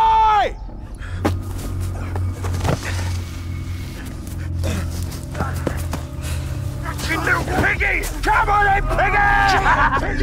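Film soundtrack: a brief loud vocal cry at the very start, then a low droning score with scattered soft knocks; from about seven seconds in, young men's strained shouts and grunts as a scuffle breaks out.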